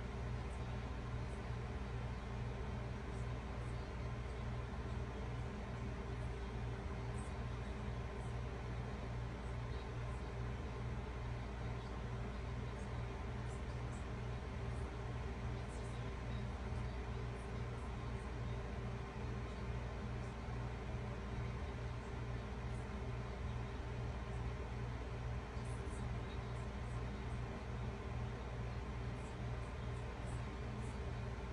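Steady low hum and hiss of background room noise, with a few faint high ticks.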